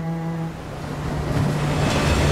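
Sea surf breaking against rocky shore, a rushing swell that builds up from about a second in. A held music chord cuts off shortly before it.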